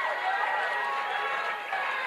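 Large crowd reacting to a speech with a steady din of many voices shouting and cheering, with applause.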